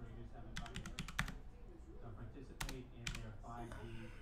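Typing on a computer keyboard: a quick run of keystrokes about half a second in, then two single key presses later on.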